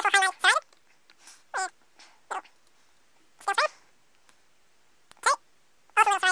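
A pet animal's short, wavering whining calls, about half a dozen spread unevenly.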